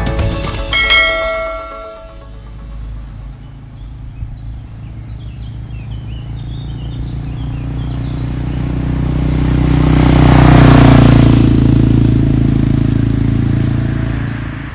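Outro music ending in ringing chime notes, then a single-cylinder Honda NX650 Dominator motorcycle approaching along the road, its engine growing steadily louder to a pass-by about ten to eleven seconds in before fading away.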